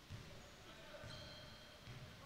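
Faint basketball bouncing on a hardwood gym floor, a few dull thuds in a quiet hall.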